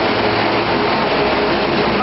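A vehicle engine running steadily: a continuous low rumble with a faint steady hum.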